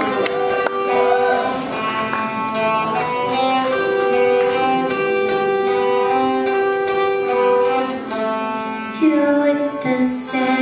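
Appalachian dulcimer played solo, picking a slow melody over ringing drone strings, with notes held long and overlapping.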